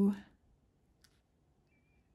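A woman's voice holding a drawn-out, steady hummed note that ends about a quarter second in, followed by quiet room tone with a single faint click about a second in.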